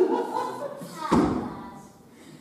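A single heavy thump about a second in, dying away quickly in the hall's echo.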